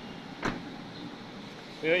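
A single sharp knock about half a second in, over a faint steady background; a voice starts just before the end.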